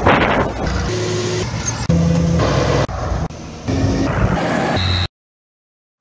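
Quick cuts of tractor and farm-machinery engines running, the engine sound changing abruptly about once a second. It cuts off suddenly about five seconds in.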